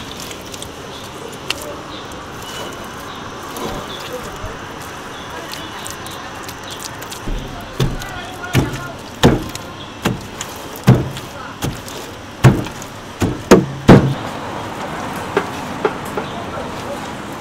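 Wet clay being slapped and packed by hand around paper-wrapped chickens for beggar's chicken. About halfway through come a dozen heavy, dull thuds, a little under a second apart, over a steady hum of street traffic.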